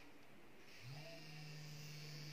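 Coin vibration motor driven by an Arduino Mega at about 60% PWM starts buzzing about a second in, then runs with a faint, steady low hum. It has switched on because the force-sensing resistor's reading passed the 1000 threshold.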